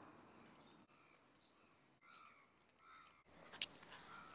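Near silence: faint quiet-street background picked up by a clip-on wireless microphone, with two faint short pitched sounds about two and three seconds in and two sharp clicks near the end.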